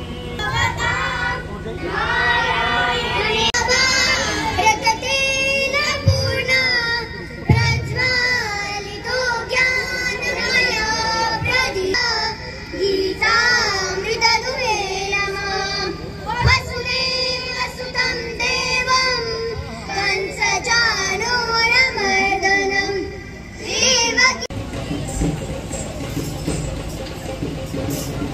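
A song playing: a high singing voice with wavering held notes over music, dipping briefly near the end.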